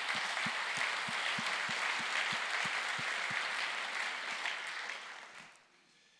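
Audience applauding, with a steady beat of low knocks about three a second through the first half, then fading out near the end.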